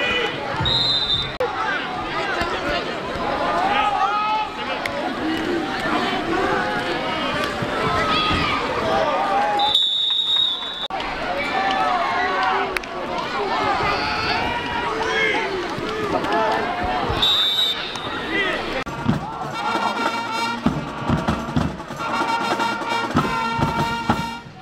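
Football crowd noise: many voices shouting and talking over each other, with short shrill referee whistle blasts about a second in, around ten seconds in and around seventeen seconds in. Music with sustained chords joins in the last few seconds.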